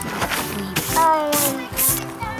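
Background music with steady sustained notes, and a voice making a short falling sound about a second in.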